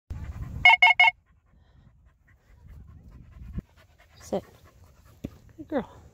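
Dog panting, with three quick identical high beeps about a second in. A woman's voice says "good girl" near the end.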